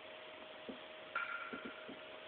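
A recorded song played back quietly over a speaker: a single held note sounds throughout, a higher note joins a little past halfway, and a few soft ticks sound toward the end.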